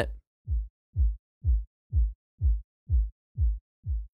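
Kick drum heard through Ableton Live 10's Drum Buss with only its low Boom band soloed, so just the frequencies below about 100 Hz come through. It plays as short, deep thuds about twice a second, each dropping in pitch, with the decay pulled down to tighten the tail.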